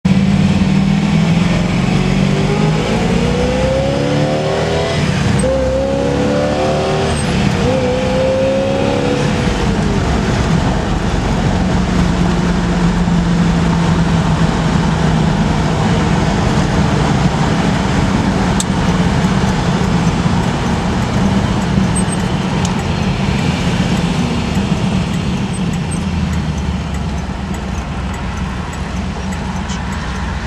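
1969 Camaro Z/28's 302 small-block V8 heard from inside the car while driving. It rises in pitch a few seconds in as the car accelerates, then runs steady at cruising speed with road noise.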